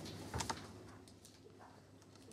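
A few small clicks and taps at classroom desks: a sharp pair about half a second in, then faint scattered ticks over quiet room noise.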